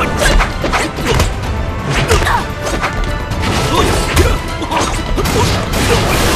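Film fight sound effects: a rapid run of hits and sword clashes laid over a dramatic action music score.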